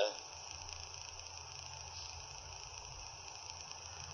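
A pause in the speech that holds only a faint, steady low hum and hiss in the recording's background.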